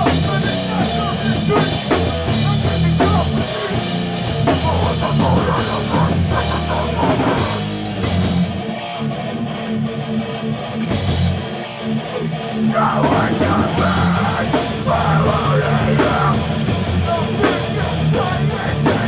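Heavy hardcore band playing live: distorted electric guitar, bass guitar and drum kit. About halfway through, the high end drops away and the band plays a sparser, lower part for a few seconds before the full sound comes back in.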